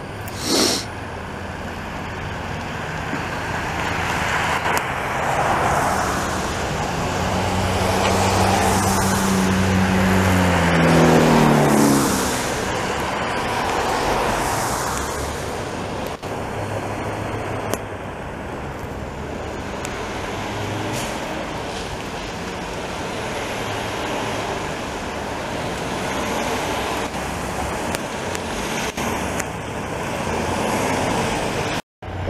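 Diesel snow removal machinery running: a loader-mounted snow blower casting snow into a dump truck, with truck engines and passing traffic, a steady rushing noise throughout. A short sharp hiss comes about half a second in, and an engine revs up around ten seconds in.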